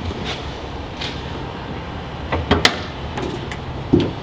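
Car hood being opened: the secondary latch released and the hood lifted and propped, heard as a few light clicks and then a cluster of sharp metallic clacks about two and a half seconds in, over steady background noise.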